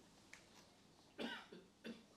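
A person's short cough a little over a second in, with a second brief one just before the end, in an otherwise quiet room.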